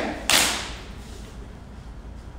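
One loud, sharp hit from a line of dancers striking together about a third of a second in, with a short echo in the room, then only a low room hum.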